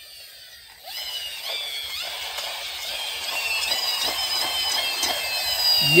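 Battery-operated plastic toy helicopter playing its electronic sound effect: a high-pitched, warbling electronic pattern that starts about a second in and grows louder.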